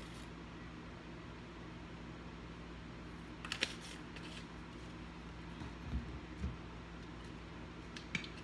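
Steady low hum, broken about three and a half seconds in by a quick cluster of sharp clicks from the plastic cap of a garlic powder shaker being handled, and by two soft low thumps around six seconds.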